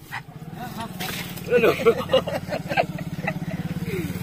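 A vehicle engine running with a steady, evenly pulsing hum, with several short, loud pitched sounds about one and a half to two seconds in.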